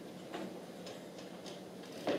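Quiet room with a few faint, scattered clicks and small knocks of instrument handling, no music playing.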